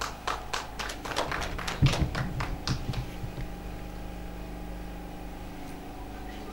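Scattered hand claps from a few people, about a dozen sharp claps in the first three seconds, with a low thump about two seconds in; after that only a steady low hum remains.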